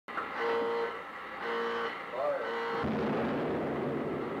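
Opening title sound: a few short, held pitched calls, then a rushing noise that dies away.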